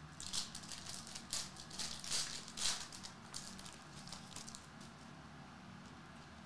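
Foil wrapper of a trading-card pack crinkling and tearing as it is opened, a quick run of sharp rustles over the first three seconds, then fainter rustling as the cards are handled.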